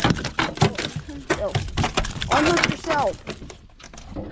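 Smallmouth bass flopping on the floor of a fishing boat: a quick, irregular run of slaps and knocks, with voices exclaiming between them.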